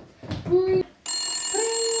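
A brief voice sound, then a telephone ringing: a steady electronic ring tone that starts about a second in and holds on one pitch.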